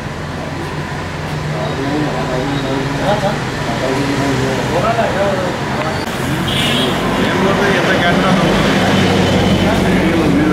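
Indistinct voices over street traffic, with a steady vehicle engine hum that grows louder in the second half.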